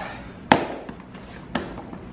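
A single sharp knock about half a second in, then a softer knock about a second later.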